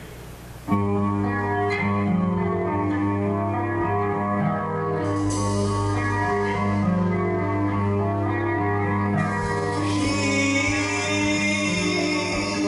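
A metal/rock band's instrumental intro: electric guitars and bass guitar come in together abruptly a moment after a short lull, then play on at a steady level.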